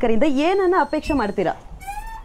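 A woman's voice speaking with a high, wavering pitch, followed by a brief higher-pitched vocal sound near the end.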